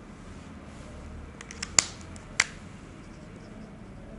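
Whiteboard marker tapping and clicking against the board while writing: a few faint ticks, then two sharp clicks about half a second apart around the middle.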